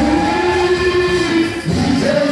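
Gospel choir singing a long held chord, broken off near the end before the next phrase begins.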